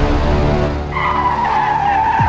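Sound effects for an animated logo: a noisy rush, then about a second in a sustained high screech like tyres skidding, sagging slightly in pitch, over a music sting.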